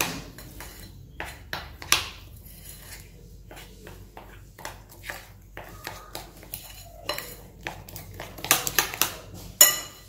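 A metal spoon stirring a thick mixture of melted chocolate and chopped peanuts in a glass bowl, clinking and scraping against the glass. There is a run of louder clinks near the end.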